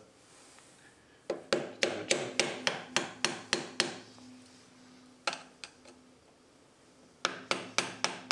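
A small hammer lightly tapping the end of a screwdriver to bend back a locking tab on the oil passageway pipe of a Honda CBR1000F crankcase. There is a quick run of about ten taps, then a couple of faint ones, then another run near the end.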